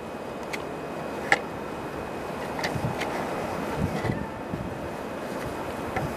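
Low rumble of approaching GE diesel locomotives, a three-unit BNSF light engine consist, under steady wind noise on the microphone, with a few faint clicks.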